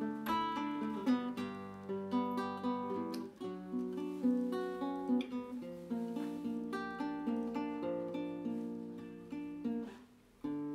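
Nylon-string classical guitar played fingerstyle: a plucked melody over held bass notes, moving continuously.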